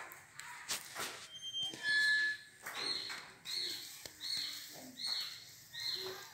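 A bird's short, high call repeated evenly about every three-quarters of a second from about two and a half seconds in, after a few scattered knocks.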